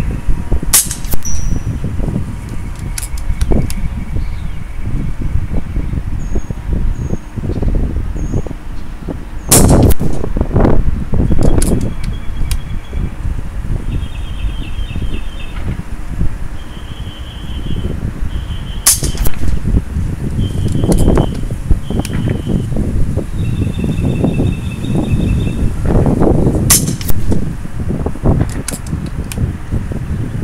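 A .22 FX Dreamline PCP air rifle firing: four sharp shots about eight to nine seconds apart, with softer clicks between them.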